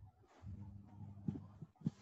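Faint room noise through a microphone: a steady low hum with a light hiss, and two short knocks in the second half, the second one louder.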